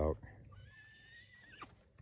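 A faint horse whinny: one thin, high call about a second long that drops in pitch as it ends.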